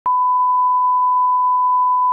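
Broadcast line-up test tone that accompanies colour bars: one pure, steady, unwavering pitch that starts abruptly at the very beginning and holds at an even level.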